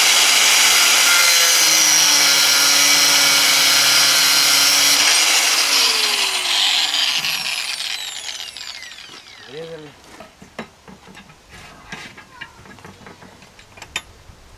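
Angle grinder with an abrasive disc cutting through a steel rod held in a vise, running steadily under load. After about six seconds the noise fades as the grinder is switched off, with a falling whine as the disc spins down.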